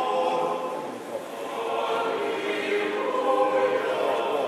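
A choir singing Orthodox church chant, several voices holding long, sustained notes.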